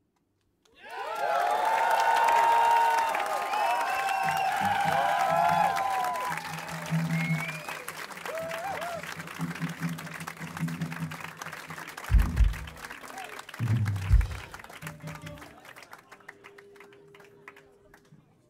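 A concert crowd bursts into clapping and cheering just after the start, loud at first and then thinning out. Low bass notes sound beneath it from about four seconds in, with two heavy low thumps a little after the middle. Near the end the applause dies away, leaving a faint steady held tone.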